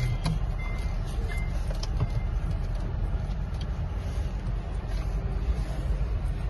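Car interior rumble of the engine and tyres as the car pulls away and drives, heard from inside the cabin, with a few short high beeps in the first second and a half.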